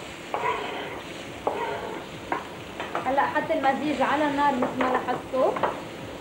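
Chopped vegetables sizzling in a hot frying pan while being stirred and tossed, with scrapes and knocks of the utensil against the pan, busier in the second half.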